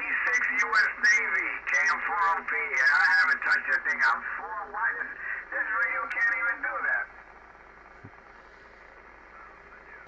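A voice heard over an amateur radio receiver's speaker, thin and narrow in tone, as from a received ham station on the Yaesu FT-101. The voice cuts off abruptly about seven seconds in, leaving faint receiver hiss.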